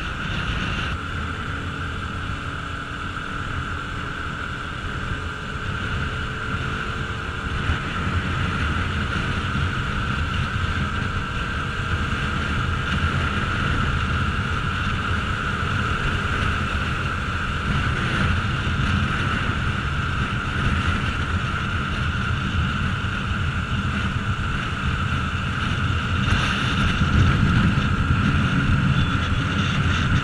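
Bajaj Pulsar RS200 motorcycle riding at highway speed: steady wind rush on the microphone over the single-cylinder engine running, getting a little louder near the end.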